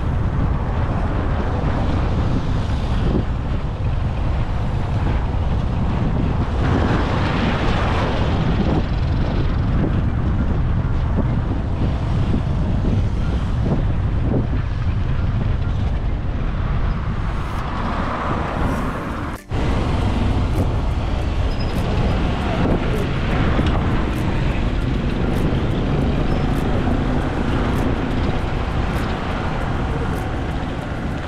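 Steady road-traffic noise with a low rumble and wind buffeting the microphone. The sound drops out for a moment about two-thirds of the way through.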